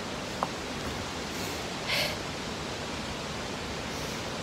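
Steady outdoor hiss, with a small click about half a second in and a short, sharp scuff near the middle.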